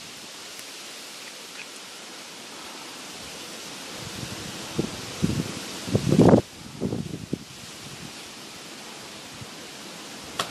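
Steady outdoor hiss with a cluster of low rustles and thumps in the middle, the loudest a little after six seconds in.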